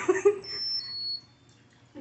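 A person's brief laugh or murmur, with faint, thin, high electronic tones stepping down in pitch, like a tinny buzzer melody from a musical flower birthday candle.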